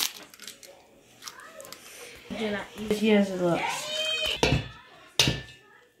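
Soft, pitch-gliding vocal sounds from a child, then one sharp crack about five seconds in as an egg is struck on the rim of a glass mixing bowl.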